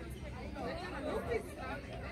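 Indistinct chatter of several overlapping voices, with no clear words, from spectators at the pitch side.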